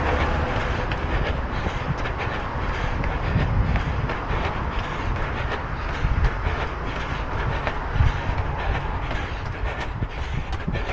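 Steady wind rumble on the microphone of a camera carried by a runner, with the runner's footfalls and road traffic faintly mixed in.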